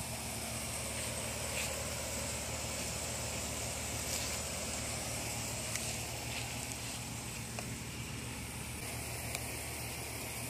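A steady low mechanical hum, like a distant engine or machine running, with a few faint ticks over it.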